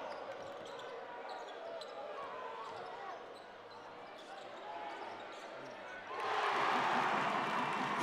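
Basketball game sound in a large gym: the ball dribbling on the hardwood and sneakers squeaking over a murmur from the stands. The crowd noise swells about six seconds in.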